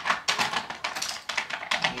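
Small plastic makeup containers and compacts clicking and clattering as they are handled and packed into a makeup bag: a quick, irregular run of small clicks.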